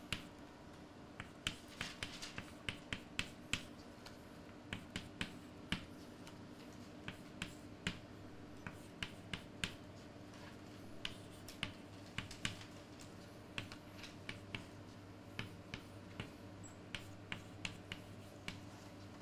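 Chalk on a blackboard: irregular sharp taps and clicks, several a second at times, as formulas are written, over a faint steady hum.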